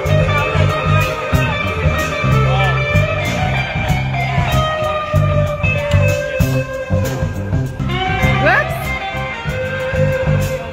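Live band playing: a Fender Stratocaster electric guitar, played through a Fender '65 Deluxe Reverb amp with delay and overdrive, plays held lead notes over bass and drums, with a quick rising bend near the end.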